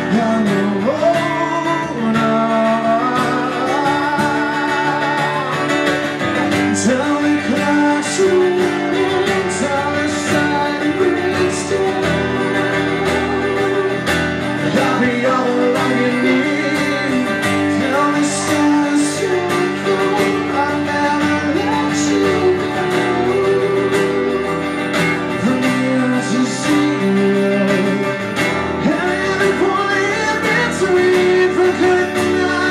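Live acoustic music: two acoustic guitars strummed together with a man singing.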